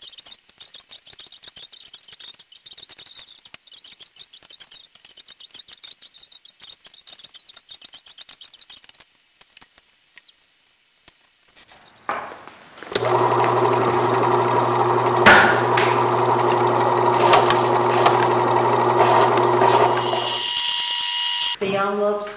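Rapid papery rustling of envelopes being handled, then an electric envelope-opening machine running with a steady motor hum for about seven seconds as envelopes are fed through and slit open, with a sharp click partway through.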